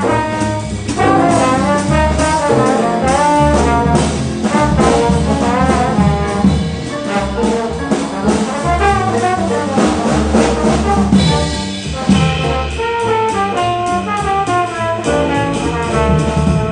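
Small jazz group playing: a trombone carries a busy melodic line over piano, upright bass, and drums with cymbals. The horn line breaks off briefly about three-quarters of the way through, then picks up again.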